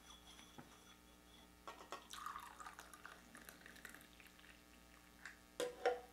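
Coffee being poured from a stainless steel thermal carafe into small glasses: a faint trickle of liquid about two seconds in, with light clicks of glass and a louder clunk near the end.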